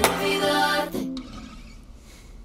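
Acoustic guitar's closing strummed chord ringing and dying away over about a second, with a faint second touch of the strings just after, fading into quiet room tone as the song ends.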